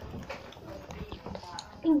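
Rustling and light irregular knocks of a handheld phone camera being moved around, with a faint voice in the background.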